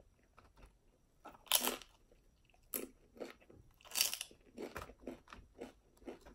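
Close-miked eating of chicken wings: scattered crunchy bites and wet chewing with short pauses between them, the crispest bites about a second and a half in and again at about four seconds.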